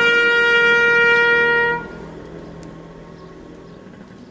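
Solo trumpet holding one long note, which stops a little under two seconds in.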